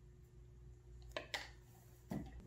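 Low steady hum of a quiet room, with two short sharp clicks a little over a second in.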